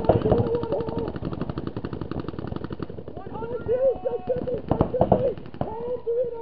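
Paintball markers firing in rapid strings of shots, densest through the first half, with players shouting across the field.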